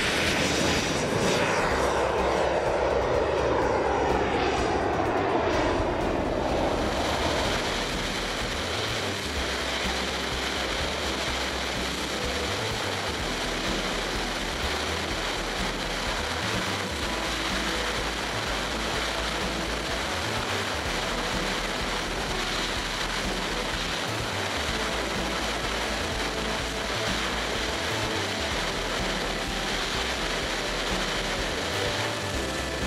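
Radio-controlled model jet's KingTech K-170 turbine flying past, its whine falling in pitch as it goes by over the first several seconds. Then a steady rush of engine and air noise with a low rumble, heard from a camera mounted on the model in flight.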